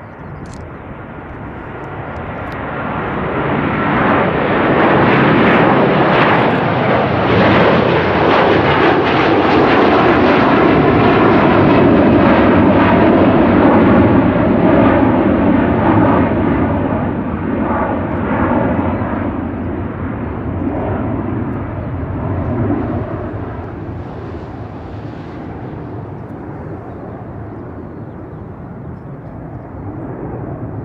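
Airbus A330-243 jet airliner's Rolls-Royce Trent 700 engines at takeoff thrust as it climbs out. The sound builds over the first few seconds, stays loud for about ten seconds, then slowly fades as the aircraft moves away.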